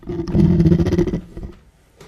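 A person clearing their throat close to a microphone: one rough sound about a second long, fading out about a second and a half in.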